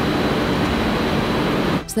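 Steady, dense mechanical noise of sugar-factory machinery, with a belt conveyor carrying sliced sugar beet (cossettes). It drops away just before the end.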